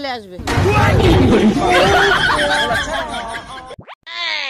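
Several overlapping voices over loud noise, a dense jumble rather than one clear speaker, cut off suddenly near the end.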